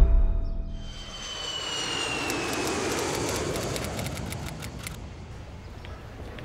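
A jet airliner passing: a swelling rush of engine noise with a high whine that slides slowly down in pitch, loudest two to three seconds in and fading away near the end. It opens with a low musical hit as the underscore ends.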